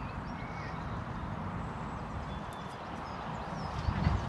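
Steady low rumble of wind on the microphone, with a few faint bird chirps near the start and again near the end.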